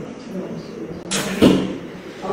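A brief swish about a second in, ending in a dull knock, over faint voices in the room.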